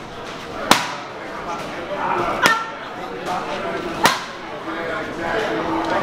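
Boxing gloves hitting a trainer's flat punch paddles in pad work: three sharp, loud smacks about a second and a half apart, with a few lighter hits between.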